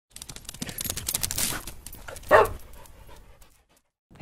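Intro sound effect: a rapid run of breathy pulses that builds and fades over the first two seconds, then one short pitched yelp-like call about two and a half seconds in, dying away to silence.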